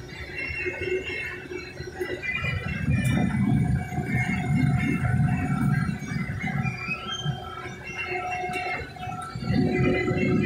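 Combine harvester running, heard from inside its cab: a low rumble that swells about two and a half seconds in, dips late on and comes back near the end, with high squealing tones over it.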